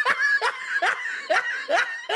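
A man laughing in a run of short, rising bursts, about five in two seconds.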